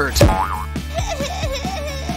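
Background music with a steady beat, with a springy cartoon boing near the start, then a wavering, drawn-out pained whimper.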